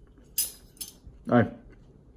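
Two quick clinks of cutlery against a dish during a takeaway meal, then a man's short spoken 'No.'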